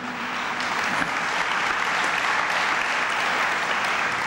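Large audience applauding steadily, a dense, even clapping.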